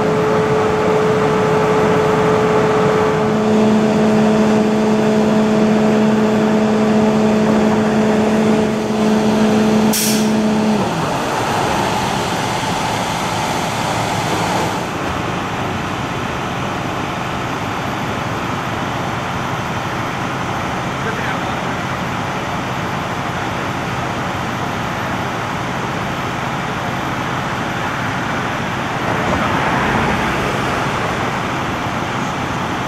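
Idling vehicle engines with a steady, multi-tone hum that cuts off suddenly about eleven seconds in, after which a steady noise carries on. A brief sharp hiss sounds about ten seconds in.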